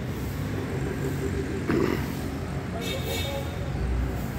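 Steady low rumble of a motor vehicle running on a road, with a short voice sound about two seconds in.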